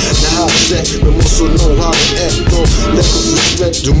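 Hip hop track with a steady beat and a male voice rapping over it.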